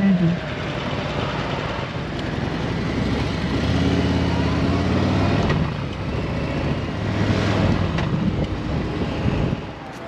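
Harley-Davidson V-twin motorcycle engines running while riding, with wind noise on the microphone; the engine note shifts a few times.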